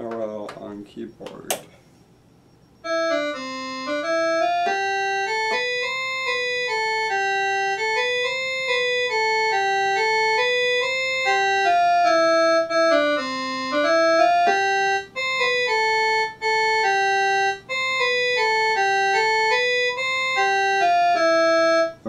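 A two-part melody of held, organ-like electronic keyboard notes, each at a steady pitch and changing abruptly from note to note. It starts about three seconds in, with a few brief breaks past the middle.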